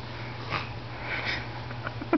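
A baby making breathy sniffing noises: a short sniff about half a second in and a longer one just after a second in.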